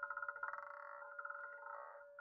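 Roulette ball rattling over the frets and pockets of the spinning wheel as it settles: a faint, quick, uneven clatter with a ringing tone.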